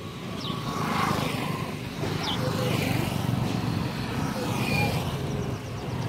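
Street traffic: a motor vehicle's engine running and passing on a dirt road, a steady rumble that swells about a second in, with a few short high chirps over it.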